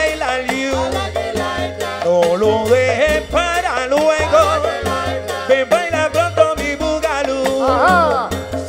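A live salsa band playing, with a male lead singer over a steady percussion rhythm and bass line.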